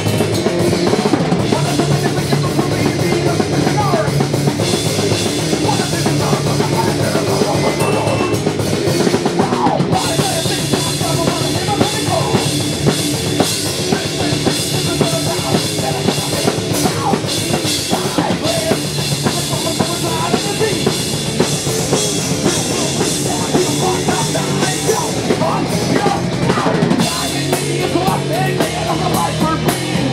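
Live rock band playing loudly, the drum kit to the fore with bass drum, snare and cymbals over electric bass and guitar. The cymbals grow brighter about ten seconds in.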